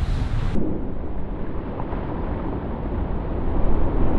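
Steady low rumble and rushing of water and wind through the hull, heard below deck on an offshore racing yacht sailing fast in heavy wind of about 45 knots.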